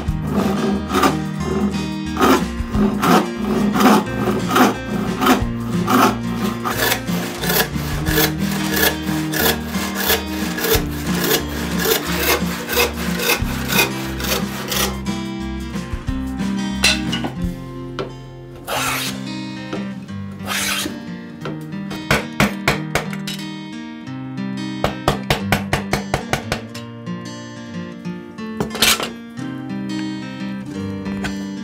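A hand saw cuts through a wooden board in quick, even back-and-forth strokes for about the first half, under background music. In the second half the sawing stops, leaving the music with scattered knocks and a quick run of taps.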